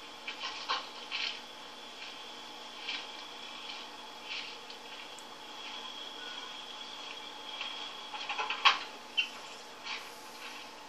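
Rustling and snapping in woodland undergrowth over a steady high hum, heard from a film soundtrack through a TV speaker, with a sharper crack about nine seconds in.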